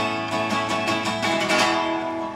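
Acoustic guitar strummed in a steady rhythm, chords ringing on between the sung lines of the song.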